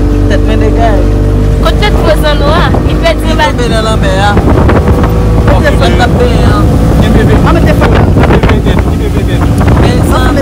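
Motorboat engine running steadily at speed, a loud low hum, with wind buffeting the microphone. Voices are heard over it.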